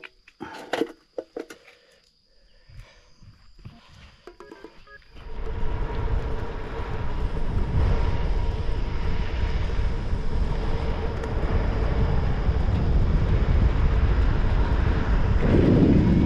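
A few faint knocks over near quiet. Then, starting suddenly about five seconds in, a loud steady rush of wind on the microphone from riding a bicycle along a paved road.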